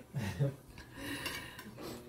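Steel knife and fork scraping and clinking against a ceramic plate while slicing cooked beef.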